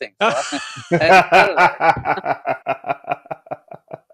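Men laughing together, the laughter breaking into quick repeated chuckles that taper off near the end.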